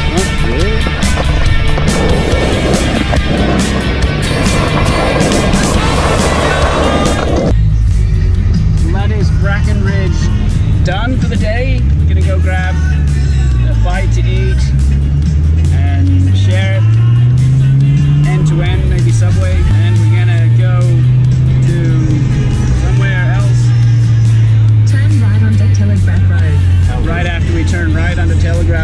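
Background music for about seven seconds, then a car engine heard from inside the cabin of a Nissan Stagea. Its pitch climbs, drops with a gear change, then holds steady while cruising, with music and voices over it.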